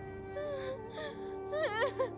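A young woman crying and wailing in distress, her voice breaking in a couple of sobs, the louder one near the end, over sustained background music.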